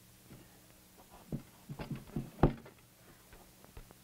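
A cluster of short knocks and thumps from puppets being handled against the prop bathtub and stage, the loudest about two and a half seconds in, over a low steady hum.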